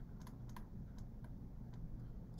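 Faint, irregular light clicks and taps of a stylus on a drawing tablet during handwriting, over a low steady background hum.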